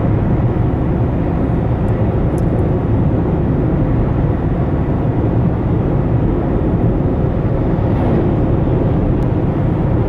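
Steady low road noise heard inside the cabin of a moving car.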